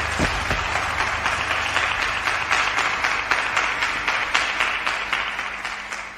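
Audience applauding at the end of a live song, the clapping fading out near the end.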